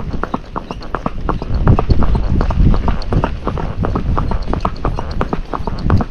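Hooves of a Missouri Fox Trotter striking a paved road in a quick, even run of hoofbeats as the horse is ridden in a smooth gait.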